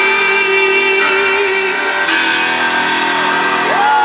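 Live synth-pop band music from a concert, the male lead singer holding one long steady note over the band for nearly two seconds before the music moves on.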